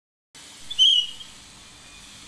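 A small plastic toy whistle blown once: a short, high-pitched toot of about half a second, just after a brief first peep.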